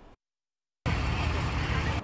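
The sound drops out completely for under a second. Then comes a loud, steady rumble with hiss from a house-fire scene where fire engines are running, heard through a phone's microphone.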